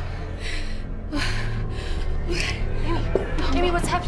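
A woman gasping and panting in distress, with short strained vocal sounds, over a low droning horror-trailer score.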